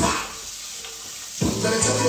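Hip hop music whose beat cuts out for about a second, leaving only a faint hiss, then drops back in with a heavy kick drum and bass about one and a half seconds in.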